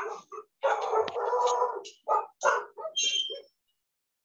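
A dog barking several times in quick succession, heard over a video call.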